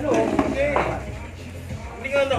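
Background music with a singing voice over a steady bass, and a single sharp click about half a second in.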